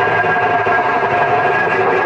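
Harsh noise music: a loud, dense, unbroken wall of distorted electronic noise, with a few faint steady tones buried in it.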